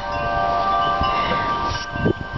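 Wind chimes ringing in a gust of wind, several tones sounding together and held steadily.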